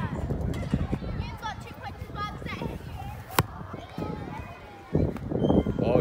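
Voices of children playing, with one sharp thud about halfway through: a football being kicked. The voices grow louder near the end.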